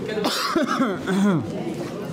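A cough followed by short, indistinct voices.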